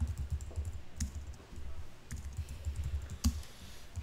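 Typing on a computer keyboard: a run of short, irregular keystrokes, with a couple of sharper clicks among them.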